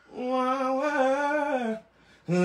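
A voice singing one long held note of a gospel line, sliding down in pitch as it ends.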